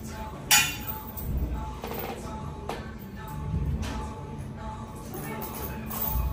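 Background music with one sharp metallic clink about half a second in and a couple of fainter clinks later, from the loaded barbell's plates knocking during shrugs.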